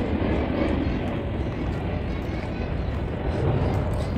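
Steady, low outdoor rumble with no distinct event in it.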